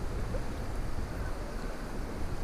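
Shallow river running fast over stones, a steady rush of water, with wind rumbling on the microphone.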